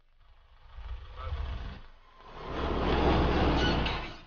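Pickup truck driving past on a dirt track, its engine and tyre noise swelling twice. It is loudest in the second half and drops off suddenly at the end.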